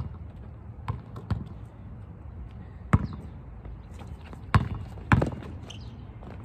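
Basketball bouncing on an asphalt court: a handful of sharp, unevenly spaced bounces as a player dribbles and drives to the hoop.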